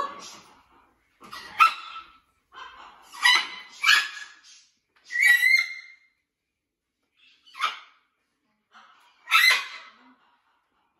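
Macaws giving a string of short, loud squawks and calls, about seven in all, separated by brief silences.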